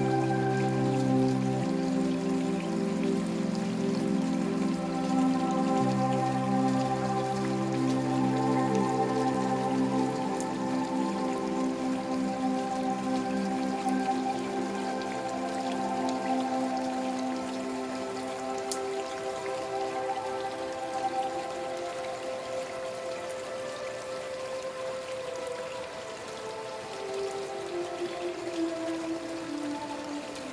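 Steady rainfall mixed with slow new-age relaxation music of long, held chords. The low notes fade out about ten seconds in, and near the end one tone slides slowly downward.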